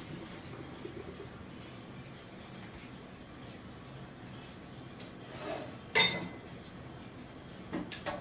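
Hot potato water draining through a metal colander in a kitchen sink, a faint steady wash, with a sharp clank of cookware about six seconds in.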